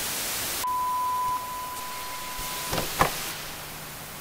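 Television static hiss with a steady high beep tone, like a test-tone bleep, lasting about two seconds, followed by two short clicks near the end as the hiss dies away.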